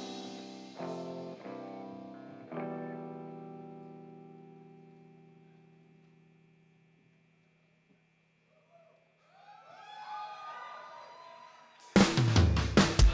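Solo electric guitar played through effects: three chords are struck in the first few seconds and left to ring, fading away slowly. Near the end, gliding, bending notes swell up in volume, and the full rock band with drums comes back in right at the close.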